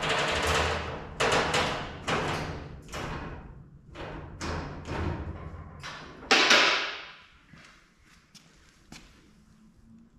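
Two-post vehicle lift letting a truck body down in short stages: a string of sudden hissing, clunking bursts, roughly one a second, each dying away over about half a second, turning faint in the last few seconds.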